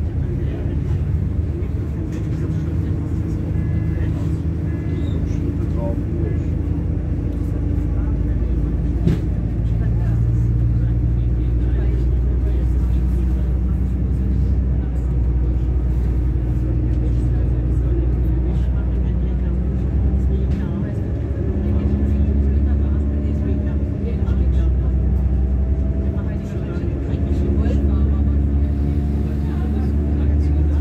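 Diesel railcar under way, heard from on board: the engine and drivetrain run with a steady low drone whose tones shift in pitch, and a higher tone rises over the last ten seconds as the train gathers speed.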